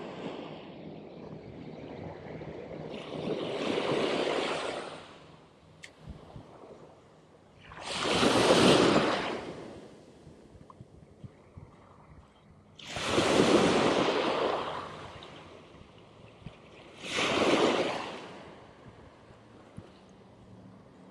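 Small surf breaking and washing up onto a sandy beach, four waves in turn, each swelling and fading over a second or two. The loudest come about 8 seconds and 13 seconds in, with a low steady wash between them.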